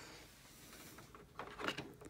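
A quiet workbench room, then a few faint small knocks and clicks of things being handled on the bench in the last second or so.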